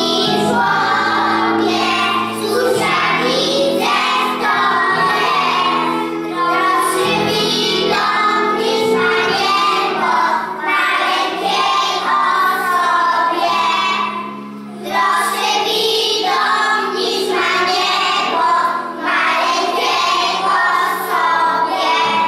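A group of young children singing a song with instrumental accompaniment, with one short pause between phrases about two-thirds of the way through.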